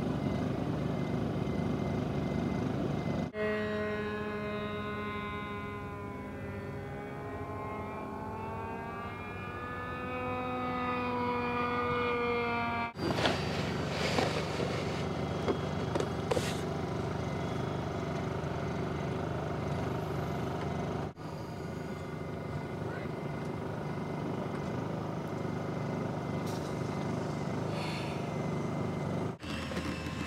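Engine drone and outdoor noise, broken by three abrupt cuts. In the stretch from about 3 to 13 seconds a droning engine slowly falls and rises in pitch. The rest is a steady rumble with a few light clicks.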